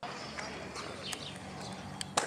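Inline skate wheels rolling on concrete, a steady rolling noise with a faint low hum and a few light clicks.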